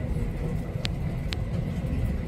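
Cabin noise of an E353-series limited express electric train running along the line: a steady low rumble from the wheels and running gear, with two brief sharp clicks about half a second apart in the middle.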